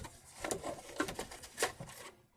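A few short knocks and rustles of small items and packaging being handled and set down on a desk.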